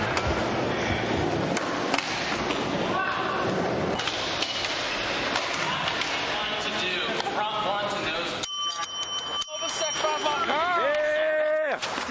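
Skateboard wheels rolling on a smooth indoor floor, with voices calling out over it. About two-thirds of the way through the rolling noise drops away and a voice is heard on its own against quiet.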